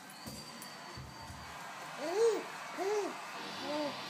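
A baby making three short open-mouthed vocal sounds, each rising then falling in pitch, about two, three and nearly four seconds in; the first is the loudest.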